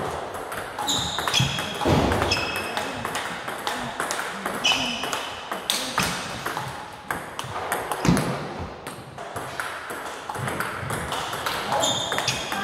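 Table tennis rally: a celluloid-type plastic ball clicking off rubber paddles and bouncing on the table in quick alternation, as one player blocks the other's forehand attacks. A few short high squeaks sound between the hits.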